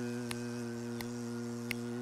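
A man's voice holding one steady, even buzzing hum, imitating the sound of an open buzz roll on a snare drum. Sharp ticks fall about every three-quarters of a second through it.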